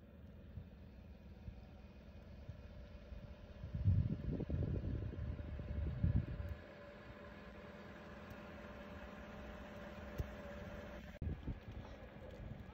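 Wind buffeting the microphone on an open, snowy prairie, with a louder gusty rumble from about four to six and a half seconds in, over a steady low hum.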